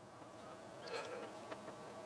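Quiet room with a faint steady buzzing hum and a few soft handling noises as a camera is swung round on a tripod's fluid head.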